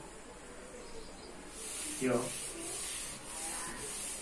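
A board duster wiping a chalkboard in quick back-and-forth strokes, about two a second, starting about a second and a half in.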